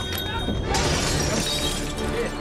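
Glass shattering, a sudden crash about a second in followed by tinkling shards, over background film music.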